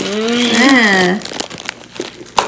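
Clear cellophane wrapping on gift-wrapped treats crinkling as it is handled. For about the first second a woman's drawn-out voice is louder than the crinkling.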